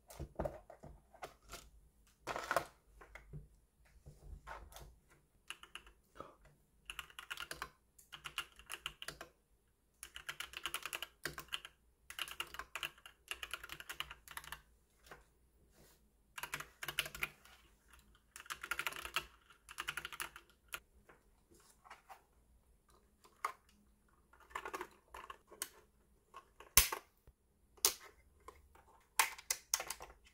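Typing on an aigo A100 mechanical keyboard: runs of rapid key clacks a second or two long, with short pauses between. Near the end, a few single louder clicks.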